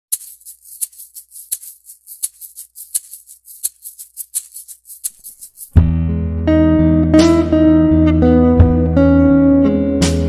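Background music: a fast, high ticking percussion pattern opens the track, then about six seconds in a full arrangement with guitar and bass comes in loudly.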